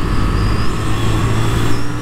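2022 Yamaha YZF-R7's 689 cc CP2 parallel-twin engine running steadily at track speed, mixed with steady wind rush on the microphone.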